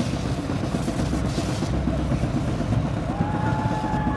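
Steady low rumble of highway traffic, with a single held high tone coming in about three seconds in.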